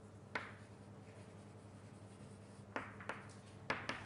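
Writing on a board: one sharp tap about a third of a second in, then a few more quick taps and strokes near the end, over a faint steady hum.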